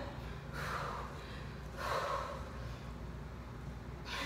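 A woman breathing hard from exertion during a Swiss ball ab and pushup set: two forceful breaths about a second and a half apart, over a low steady room hum.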